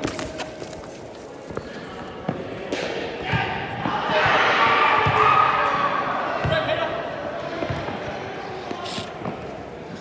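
Indoor soccer match: scattered thuds of the ball being kicked and hitting the netting or boards. Players' voices shout across the hall, loudest about four to six seconds in.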